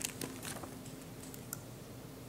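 Faint, scattered light clicks and taps in a quiet hall, a few spread unevenly, the sharpest about one and a half seconds in.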